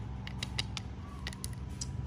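Small hand tools being handled: short light clicks and taps of plastic-handled screwdrivers being picked up and set down on a concrete floor, over a steady low background hum.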